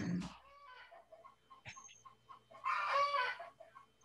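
An animal call: a few faint short pitched calls, then one louder call about two and a half seconds in that rises and falls in pitch and lasts under a second.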